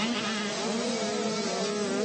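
85cc two-stroke motocross bikes running on the track, a buzzing engine note whose pitch rises and falls as the riders work the throttle.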